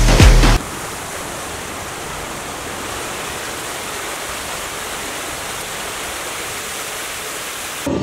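A song's last loud, bass-heavy beat cuts off about half a second in. A steady, even hiss follows, unchanging in level.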